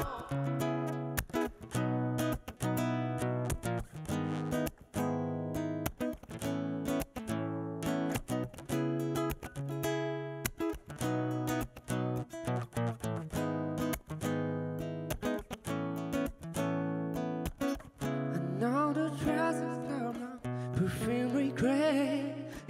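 Instrumental passage on a nylon-string acoustic guitar with a second plucked string instrument: rapid plucked notes over held low notes. A man's singing voice comes back in near the end.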